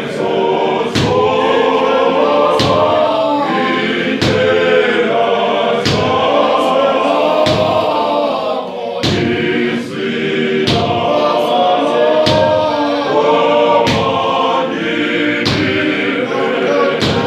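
A men's choir sings a hymn a cappella in close harmony, with a short break between phrases about nine seconds in. Sharp hand claps keep a steady beat of about one every 0.8 seconds.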